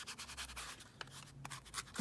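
A Distress Ink pad being rubbed around the edges of a kraft card tag: faint, irregular scratchy rubbing of pad on card.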